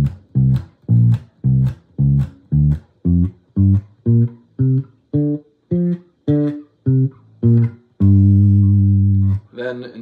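Electric bass guitar playing the G blues scale one plucked note at a time, about two notes a second, climbing and then coming back down, and ending on a low note held for over a second.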